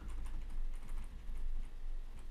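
Computer keyboard keystrokes: the left arrow key tapped repeatedly, a series of light clicks over a steady low hum.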